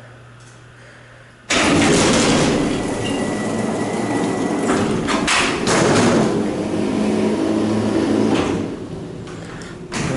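Power-operated freight elevator doors opening: a sudden loud rumbling clatter starts about a second and a half in and runs for about seven seconds, with a couple of sharp clanks midway, before it dies down.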